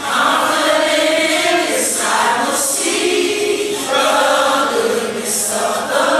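Gospel choir singing long held notes with music.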